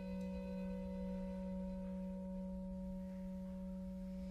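Orchestral instruments holding a soft, steady chord in a still passage of a violin concerto. The chord is nearly pure in tone, with its low note strongest.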